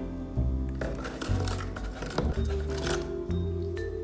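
Background music with a low bass line. From about one second in until about three seconds there is a rough, scratchy tearing noise, an African grey parrot ripping at a cardboard box with its beak.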